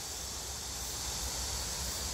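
A steady, high-pitched hiss of an insect chorus, with a low rumble underneath.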